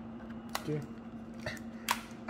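Two sharp plastic clicks, a small one about half a second in and a louder one near the end, from handling a TI-Nspire graphing calculator as its removable keypad is fitted back in. A low steady hum runs underneath.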